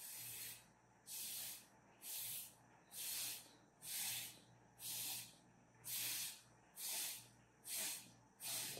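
Short breathy puffs blown through a drinking straw onto wet paint on paper, about one a second, nine in all, each about half a second long: straw blow painting, spreading the paint drops into streaks.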